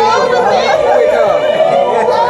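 Several people talking at once, loud overlapping chatter.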